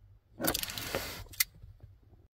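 A car key on its ring jingling as it is handled at the passenger-airbag switch lock, with one sharp click a little past halfway through.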